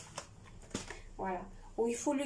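A woman's voice says a few short words in a small kitchen. Before that come two light knocks and a rustle as a cardboard packet is handled and set down on the counter.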